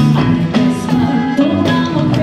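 Live band playing Mexican regional music with a rock feel: drum kit with regular hits, electric bass and guitar moving between notes, and a woman singing into a microphone.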